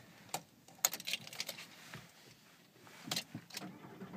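Car keys jangling, with a few sharp separate clicks as the key goes into the Volkswagen Beetle's ignition lock and is worked, and quiet in between.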